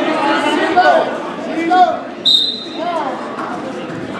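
Voices calling out loudly in a gym, with one short, shrill referee's whistle blast a little past halfway, restarting the wrestling bout.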